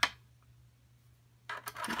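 A single sharp click of a plastic bone folder knocking against the plastic body of a paper scoring board.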